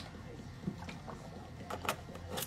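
Someone drinking from a plastic water bottle, then handling the bottle and its cap, with a few short plastic clicks near the end.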